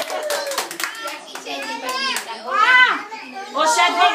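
Young children calling out in high, rising and falling voices, with scattered hand claps during the first second or so.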